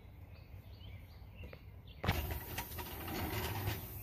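Quiet outdoor background with faint bird chirps. About halfway through it abruptly turns to a louder steady hiss with a few light clicks.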